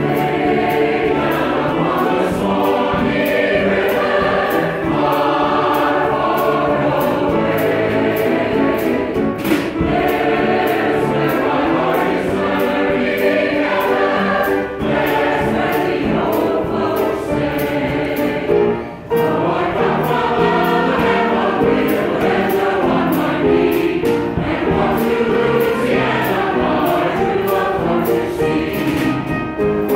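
A choir singing in full voice, with a brief pause between phrases about two-thirds of the way through.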